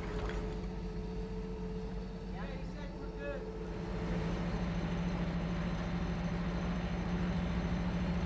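Propane-fuelled aircraft tow tug's engine running steadily as it pulls the aircraft, a little louder from about halfway through.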